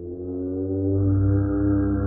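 Imagined Hypacrosaurus call built from paradise shelduck and ruddy shelduck calls: one long, deep, horn-like honk that swells about a second in and holds steady.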